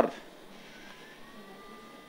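Faint electronic tone from a Stellaris Elite phacoemulsification machine, coming in about a second in and rising slightly in pitch before holding steady, over a low hiss.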